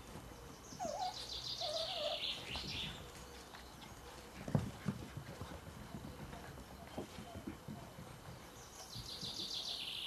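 A songbird singing a short trilled phrase of rapidly repeated high notes twice, about a second in and again near the end. Under it come a few light knocks and taps, the sharpest about halfway through.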